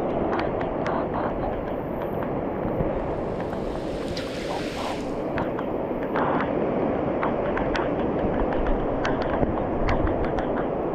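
Heavy rain pouring steadily, with many drops striking the camera as sharp ticks.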